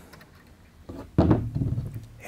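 A small steel coil valve spring from a motorcycle cylinder head set down on a wooden block: a light click about a second in, then a sharper knock.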